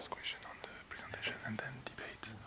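Faint whispered and murmured voices with a scatter of small clicks and rustles, all low in level.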